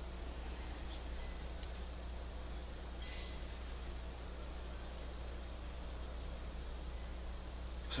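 Small birds giving a few short, scattered high chirps in the background over a steady low hum.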